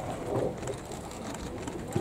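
Faint outdoor background with a bird cooing softly, a dove-like coo, about a third of a second in.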